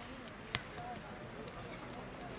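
A football struck once by a kick about half a second in, a single sharp hit, over faint shouts and calls of players.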